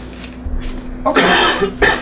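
A person coughing: one loud, harsh burst about a second in, then a short second one near the end.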